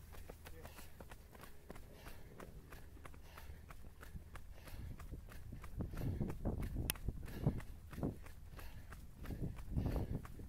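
A runner's own footsteps slapping on tarmac at a steady running pace, about three steps a second. A low rumble on the microphone grows louder from about halfway through.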